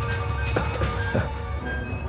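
Background music from the drama's score: sustained tones over a heavy, steady low end.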